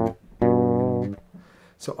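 Fretless electric bass plucked with two double stops, a short one and then one held for most of a second at a steady pitch.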